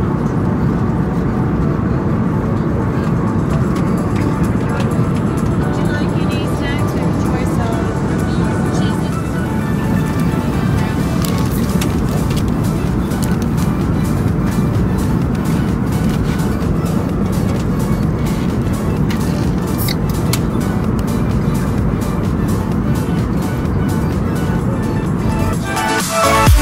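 Background music at a steady level.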